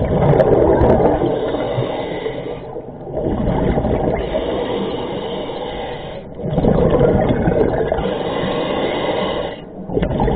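Scuba diver breathing through a regulator underwater. Rushing, gurgling surges of exhaled bubbles come about every three seconds, with short quiet gaps between breaths.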